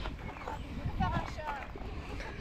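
Faint, indistinct voices in the background, with a low, irregular rumble.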